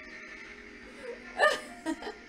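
A short giggle: one burst about one and a half seconds in and a shorter one near the end, over faint background music.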